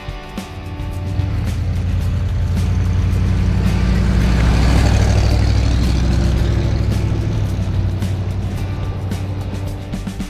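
1973 Ford F100's 360 V8 engine driving past, its low exhaust drone swelling to its loudest about halfway through and fading as the truck moves away.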